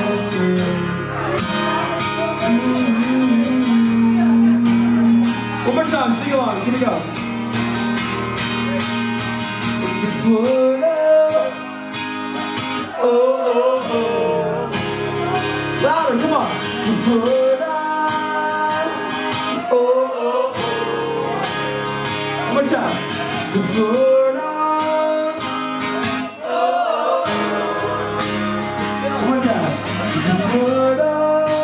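Live band music: a strummed acoustic guitar with drums, and a voice singing at times.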